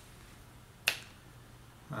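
A single short, sharp click about a second in, against a quiet room.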